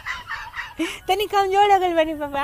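A person's voice: a breathy sound, then from about a second in a long, wavering drawn-out cry or wail.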